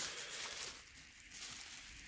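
Faint crinkling of plastic bubble wrap being handled, dying away after about a second.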